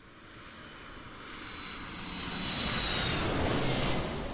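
Jet aircraft passing: engine noise swells steadily from nothing to a peak near the end, with a high whine that bends slightly downward as it peaks.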